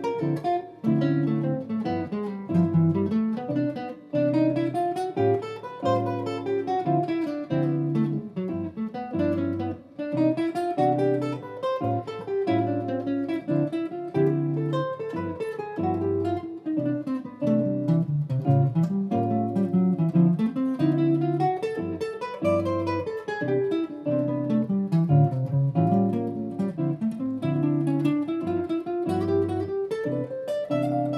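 Electric archtop jazz guitar playing an improvised single-note line in steady eighth notes that winds up and down the register. Underneath it, sustained chords change every second or two, cycling through a D minor 7, G7, C major 7, A7 progression.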